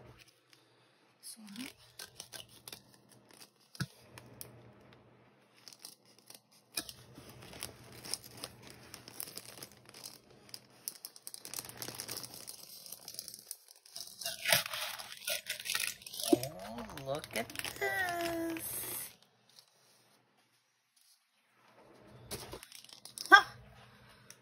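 A paper Priority Mail flat rate envelope being torn open and handled, with crinkling packaging as the contents are pulled out; the tearing and rustling come in scattered bursts, loudest a little past halfway, then stop for a few seconds near the end.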